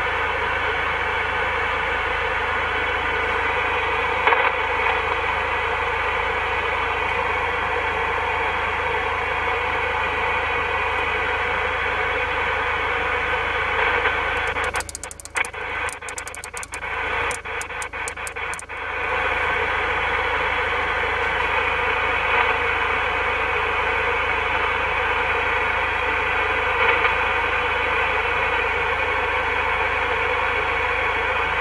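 CB radio transceiver on the 27 MHz band in USB (single sideband) mode, giving out a steady hiss of band noise and static. About halfway through, the hiss cuts in and out with sharp clicks for a few seconds as the channel selector steps across channels, then the steady hiss returns.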